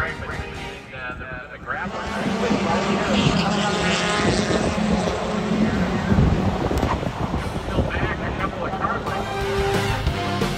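A car engine running, with a public-address announcer in the background; background music comes in about two seconds in and carries on, louder than the rest.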